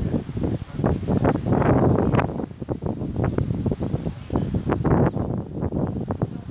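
Wind buffeting the microphone in uneven, loud gusts.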